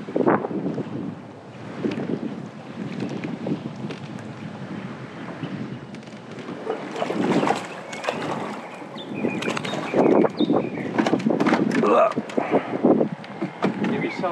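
A hooked fish splashing and thrashing at the water's surface beside a small boat, in a run of irregular splashes that grow heavier in the second half. Wind is on the microphone.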